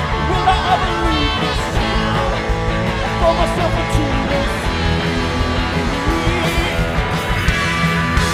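Live cow-punk rock band playing loud and steady: electric guitar over drums and bass guitar.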